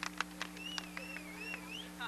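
The last scattered claps of applause, then a high, wavering whistle lasting about a second, over a steady low electrical hum.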